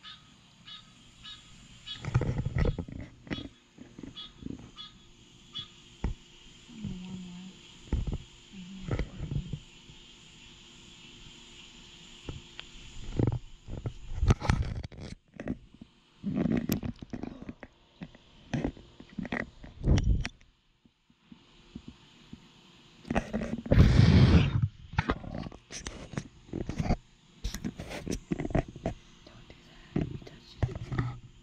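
Muffled water sounds of a camera moving through a swimming pool: irregular sloshing and splashing, the loudest burst about three-quarters of the way through.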